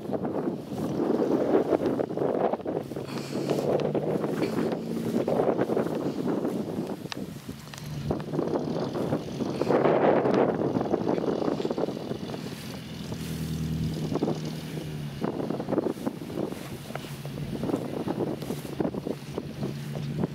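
Wind buffeting the microphone in repeated gusts, over the low, steady hum of a GAZelle van's engine as it drives across the grass.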